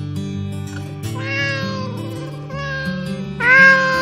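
A cat meowing twice: two long, drawn-out meows about two seconds apart, the second louder, over steady background music.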